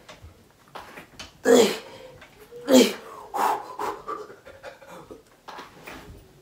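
A man panting hard and out of breath from leg exercise to failure, with two loud voiced exhales that fall in pitch about a second and a half and three seconds in, then quieter breaths.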